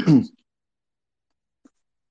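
A man's voice briefly at the very start, most likely the end of a throat clearing, then silence with one faint tiny click near the end.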